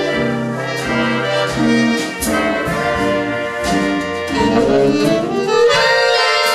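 Big band jazz: trumpets, trombones and saxophones playing in harmony, with the chords climbing in a rising run about four seconds in and landing on a held chord near the end.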